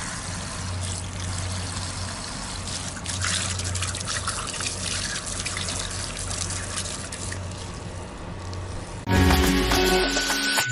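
Water from a garden hose running into and over a two-stroke Kawasaki ZX150 cylinder block, rinsing the metal dust out of the freshly ported block, a steady splashing with a low hum beneath it. About nine seconds in it cuts suddenly to outro music.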